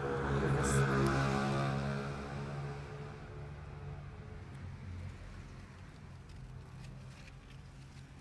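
A steady engine hum, loudest at first and fading away over the following few seconds, with a few faint clicks.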